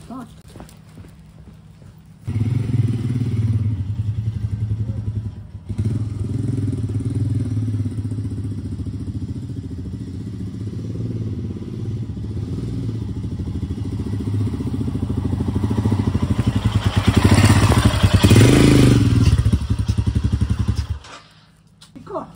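2021 Royal Enfield Himalayan's single-cylinder engine running as the bike is ridden around the yard. It comes in about two seconds in, dips briefly, grows louder as it passes close near the end, then cuts off.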